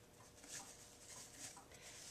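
Near silence, with faint soft rustling of a fabric ribbon bow being handled as it is pulled off a bow maker's peg.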